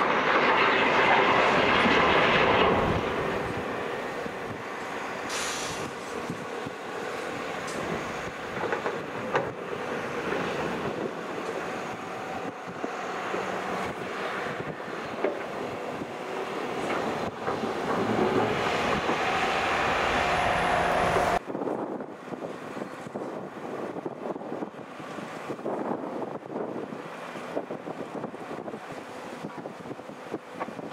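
Diesel engines of an articulated dump truck and a large long-reach tracked excavator working on sandy ground, loudest in the first few seconds as the truck tips its load, with a few sharp clanks. About two-thirds of the way through, the sound cuts suddenly to quieter wind noise on the microphone with distant machinery.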